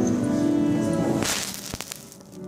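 Choral music: a held chord that fades out about a second in, then a brief rush of noise with a couple of sharp clicks as the sound drops away.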